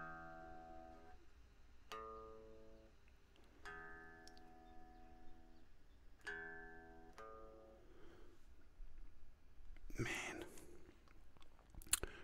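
Electric guitar heard acoustically, not plugged into the interface, so it sounds faint and thin. Single notes are plucked one at a time, about five of them a second or two apart, each ringing briefly, and a short rustle of handling noise comes about ten seconds in.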